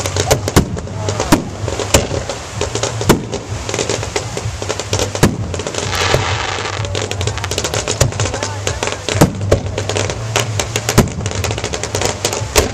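Aerial fireworks shells bursting: a rapid string of sharp bangs and cracks, with louder single booms every second or two and a stretch of crackling about six seconds in.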